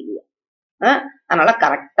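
Speech only: a woman's voice talking, after a short pause in the first second.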